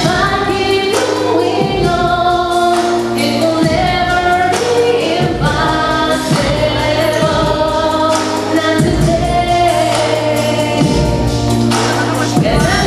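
A young woman singing a slow pop song into a microphone over a backing track with a steady beat, holding long notes with vibrato.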